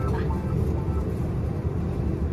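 Steady low rumble of an airliner cabin while the plane sits on the ground, held by snow.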